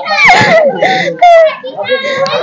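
A young child's high-pitched voice talking and calling out in short phrases, loudest about a second in.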